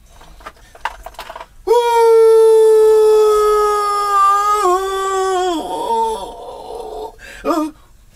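A man singing unaccompanied, holding one long high note for about four seconds from about two seconds in. The note sags slightly and wavers before breaking off, and a short yelp follows near the end.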